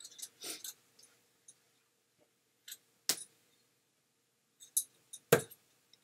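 A steel-tip dart striking the dartboard about five seconds in, a single sharp impact, after a few faint clicks and rustles.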